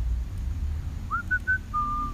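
A person whistling a short phrase of about four notes, starting about halfway through: a quick rising note, two short higher notes, then one longer held note.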